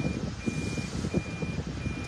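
Toyota Prius in-cabin reverse warning beeper: a steady high-pitched beep repeating evenly, about three beeps, each just under half a second, signalling that the car is in reverse.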